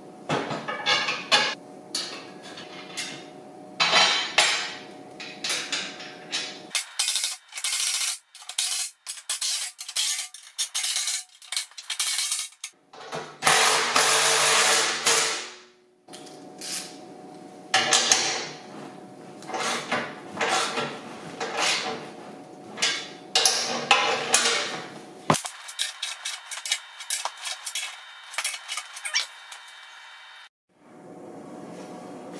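Cordless DeWalt driver running lock nuts down onto the bolts of a steel wear bar on a snow plow blade, in many short runs with clinks of hardware between them. The longest run comes about halfway through.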